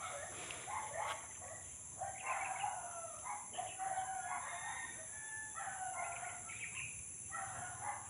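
Roosters crowing, several crows one after another, over a steady high buzz of insects.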